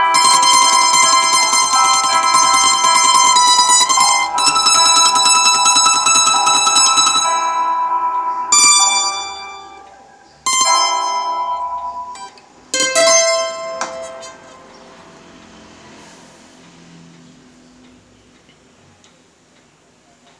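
Acoustic guitar played without singing, its notes ringing bright and steady, then dying away into a few last strummed chords about ten and thirteen seconds in that ring out and fade: the close of the piece.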